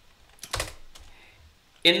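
Computer keyboard: one sharp key press about half a second in, with a faint tap just after, the Enter key sending a typed web address.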